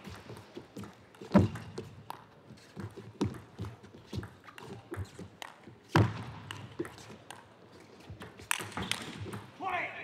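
Table tennis ball strikes: irregular sharp taps and knocks, with two much louder knocks about a second and a half in and about six seconds in.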